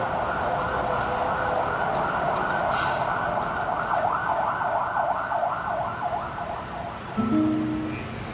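An emergency-vehicle siren wailing, its pitch sweeping up and down faster toward the end, cutting off about seven seconds in; short steady low tones follow.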